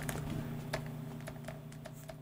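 Faint, irregular ticks and light scratches of a stylus on a graphics tablet as a word is handwritten.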